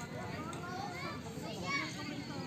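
Football players shouting and calling to one another during a match, several distant voices overlapping at once.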